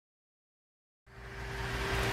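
Silence for about a second, then outdoor background noise fades in: a steady low hum under a broad hiss, with one thin constant tone.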